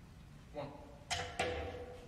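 Snooker balls striking each other: a softer knock about half a second in, then two sharp clicks about a third of a second apart, each ringing briefly, on a shot that pots a red.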